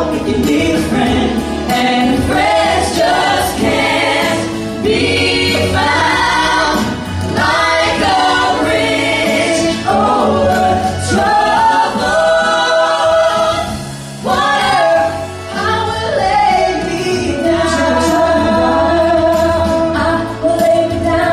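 Mixed vocal group of three women and two men singing together in harmony into handheld microphones, heard through the hall's sound system.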